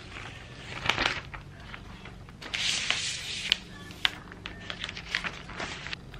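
Frosted protective wrap sheet of a new MacBook Air rustling and crinkling as it is peeled back and the laptop lifted from its box, loudest about two and a half to three and a half seconds in, with a few light ticks of handling.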